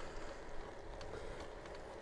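Steady low road and wind noise from a Trek Checkpoint ALR 5 gravel bike rolling on wet tarmac at about 15 mph, with a few faint clicks.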